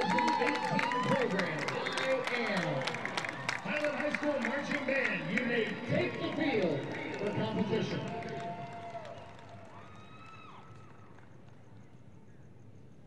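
Stadium PA announcer's voice echoing through the stadium, over cheering and scattered clapping from the stands; it all dies away to quiet stadium background about nine seconds in.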